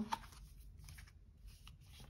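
Faint rustling and light, scattered clicks of oracle cards being slid and moved from the front of the deck to the back in the hands.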